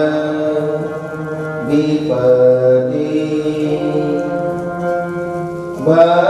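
Devotional chanting of verses in long held notes, sung to music, with the pitch moving to a new note about two seconds in and again near the end.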